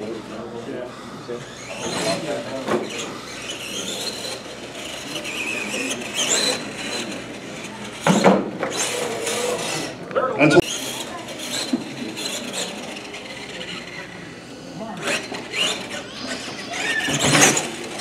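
A radio-controlled monster truck's motor whining, rising and falling with the throttle, with tyre squeal. About eight seconds in and again about ten and a half seconds in there are sharp knocks as the truck crashes and tumbles over.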